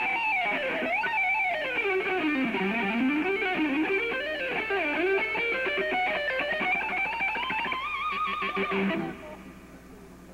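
Unaccompanied electric guitar solo played with two-handed tapping: rapid runs of notes sweep down into the low register and back up, ending on a held note with vibrato that stops about nine seconds in.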